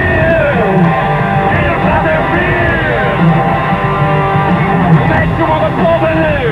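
Rock band playing loudly with electric guitar and drums.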